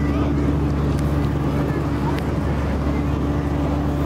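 A motor running steadily: a constant low drone with a steady hum.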